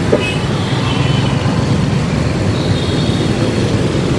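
Road traffic noise: a loud, steady rumble of passing vehicles with no breaks.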